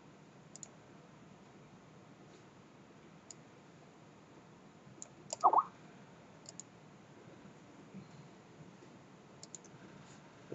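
Computer mouse clicks, mostly in quick pairs, spaced a few seconds apart over faint hiss. About halfway through comes a brief, louder pitched sound that rises in pitch.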